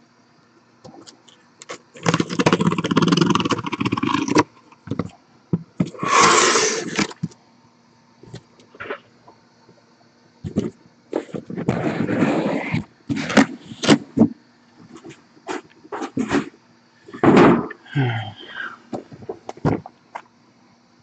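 A taped cardboard shipping case being opened and unpacked by hand: several bursts of scraping and rustling cardboard, with short clicks and knocks from handling in between.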